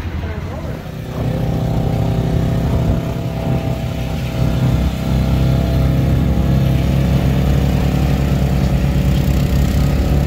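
Side-by-side utility vehicle (UTV) engine running steadily close by, setting in about a second in.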